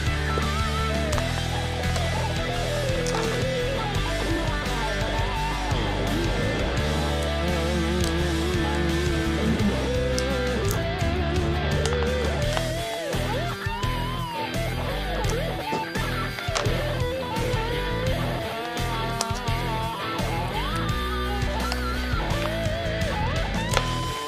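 Background music: an electric guitar solo with bending, wavering notes played over a backing track.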